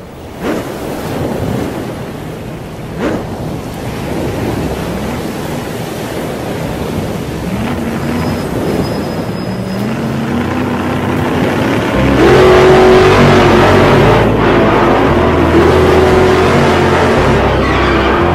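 Cartoon sound effects of vehicle engines revving and running under a rush of noise, with a few quick pitch slides early on. The sound climbs in steps and grows louder about two-thirds of the way through as the vehicles take off.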